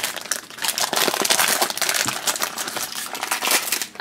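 Foil blind bag crinkling and crumpling as it is pulled open by hand, a dense run of irregular crackles that grows louder about a second in.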